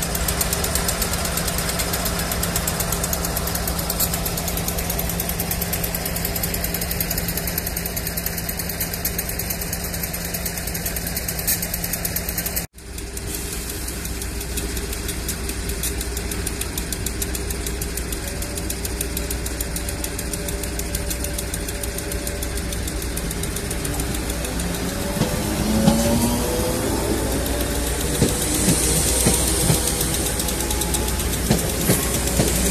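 A Class 56 diesel locomotive's V16 engine running steadily with a low hum. About 13 seconds in it cuts to a Merseyrail Class 507 electric train moving at the platform, its motors rising in pitch near the end, with clicks from the wheels on the rail.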